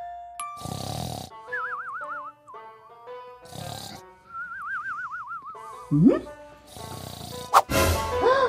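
Comic cartoon snoring sound effect: a rasping snore about every three seconds, each followed by a high wavering whistle, over soft background music.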